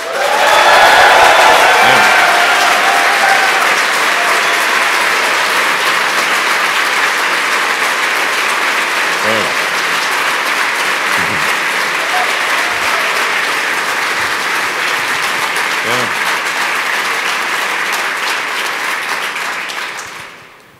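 Audience applauding and cheering, loudest with whoops in the first few seconds, then steady clapping that tapers off near the end.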